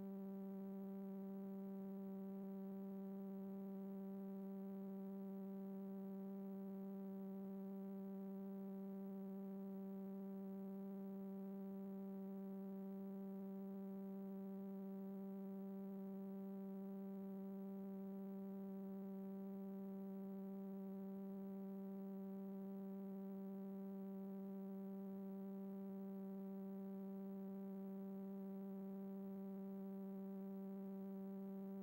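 Steady, unchanging electrical buzz with a stack of overtones: hum on the audio line of a videotape transfer while the player shows its blue no-signal screen.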